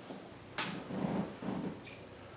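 A single sharp click about half a second in, then faint creaks and rustles of bodies and towel shifting on a massage table as the practitioner rocks his weight into the client's thighs.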